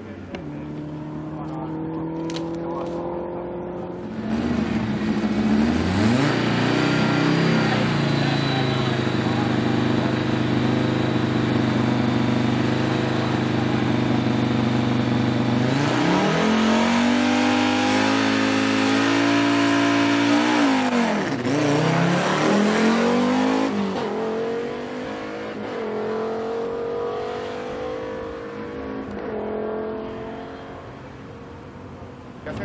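Rally car engines at a rally sprint. One fades away at the start. Then an engine is held at high revs for several seconds before accelerating hard, its pitch climbing and dropping sharply at each gear change, and another car accelerates in the distance near the end.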